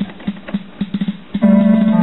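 Kimball Voyager auto-accompaniment keyboard playing its preset rhythm as a quick run of light, even clicks over a low note. About one and a half seconds in, a loud held chord comes in.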